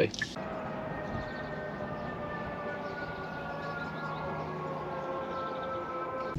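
Hyundai Ioniq 5 electric car approaching at low speed: a steady electronic-sounding hum of several tones together, drifting slowly lower in pitch.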